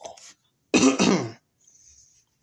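A person clearing their throat: one short, loud rasp in two pushes, just under a second in.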